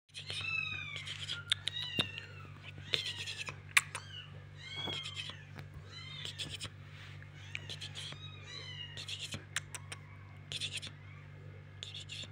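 Very young kittens mewing over and over, thin high-pitched calls that rise and fall, some in quick runs, with a few sharp clicks of handling, the loudest just before four seconds in. A steady low hum lies underneath.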